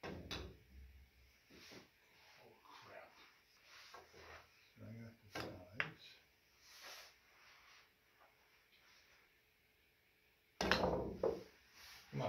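Pool cue striking a golf ball used as the cue ball, with golf balls clicking against each other and the cushions; a second, sharper cue strike comes about six seconds in.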